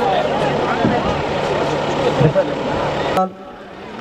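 A large outdoor crowd of men shouting and calling over one another, many voices overlapping, cut off abruptly about three seconds in.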